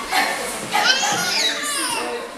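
Children shouting and playing in an indoor swimming pool, with shrill cries that rise and fall for about a second starting just before the middle.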